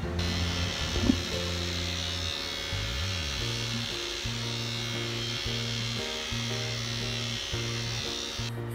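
Steady buzz of a small electric trimmer working over a man's face and jaw, with background music playing throughout.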